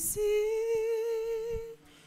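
A lone voice holding one long note of a devotional chant, with a slight waver, breaking off shortly before the end.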